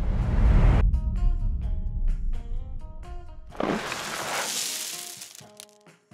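Cinematic riser sound effect: a whooshing noise swell that builds about three and a half seconds in and fades out near the end, after a deep, noisy burst in the first second. Plucked background music runs underneath.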